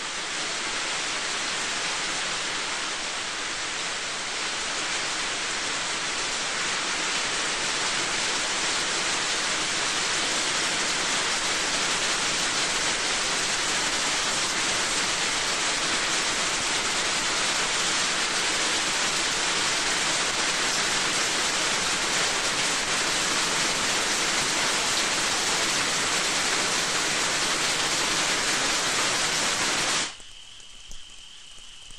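Heavy, steady rain. It swells a little over the first few seconds and cuts off suddenly at the end.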